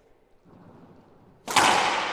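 Racquetball served hard: after a near-quiet second, a single loud sharp crack of racquet on ball about one and a half seconds in, echoing around the enclosed court.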